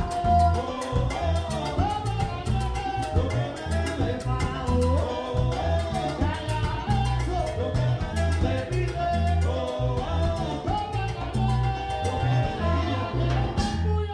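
Live Cuban salsa band playing: pulsing electric bass, drum kit and hand percussion, keyboard and horns under a male lead singer. The band stops on a sharp final accent at the very end.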